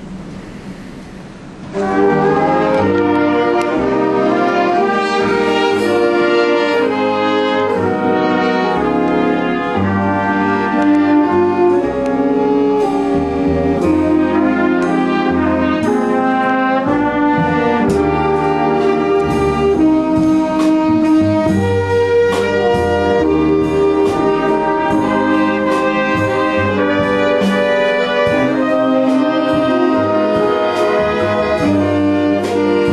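Jazz band playing a ballad, coming in about two seconds in with horns holding full, sustained chords.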